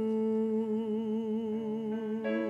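A man's voice holding one long sung note with a slow vibrato, steady in pitch.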